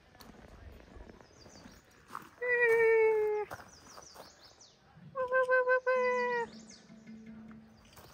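Two high, drawn-out excited vocal cries from a woman, each about a second long and falling slightly in pitch, the second one broken into short pulses, with faint high chirps around them.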